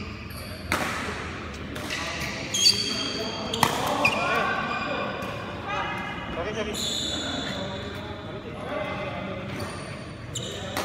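Badminton rally in a large indoor hall: sharp pops of rackets striking the shuttlecock, several in the first few seconds, and short high squeaks of court shoes on the floor, with voices in the background.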